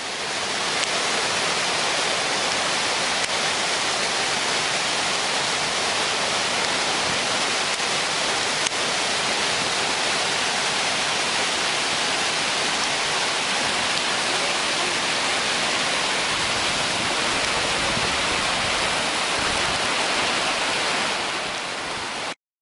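Steady rushing of Class IV whitewater rapids, a loud, even hiss that holds at one level throughout.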